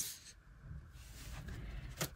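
Quiet room with a low hum and a faint rustle of tarot cards being handled, growing a little louder in the second half.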